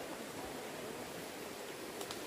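Steady rushing of a creek running beside the trail, an even noise with no breaks.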